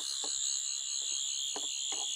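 Toy sonic screwdriver's electronic sound effect: a steady, high-pitched buzzing whine, with a few faint knocks from handling.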